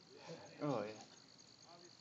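Crickets trilling steadily in high, evenly pulsed chirps, faint. A person's voice breaks in briefly about half a second in.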